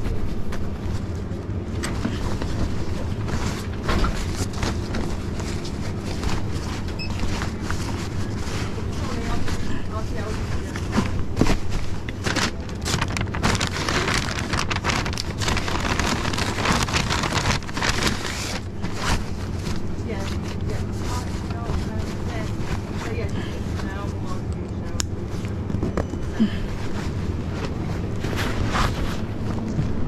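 Shop interior ambience: a steady low hum with frequent short rustling and handling noises, thickest in the middle, as a paper carrier bag and a delivery backpack are handled, with indistinct voices in the background.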